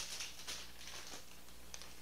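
Chip bag crinkling and rustling as it is handled, loudest in the first half second, then faint scattered rustles.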